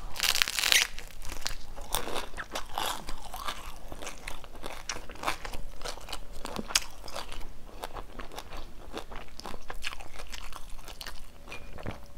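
Close-miked biting and chewing of a crispy fried rice-paper spring roll (chả giò) wrapped in lettuce and herbs. There is a loud crunching bite in the first second, then a steady run of short crisp crunches as it is chewed.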